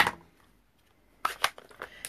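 Stampin' Up! ink pad lids being snapped shut by hand: one sharp plastic click at the start, then a quick run of lighter clicks and rustle near the end.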